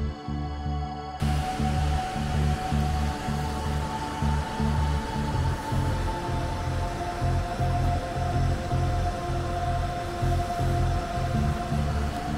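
Background music with pulsing low bass notes and a held higher tone. A steady rushing noise joins it about a second in and drops away just after the end.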